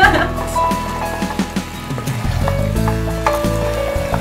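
Background music with held notes over sauce sizzling as chicken and vegetables are stirred in a heated Dutch oven with a wooden spoon.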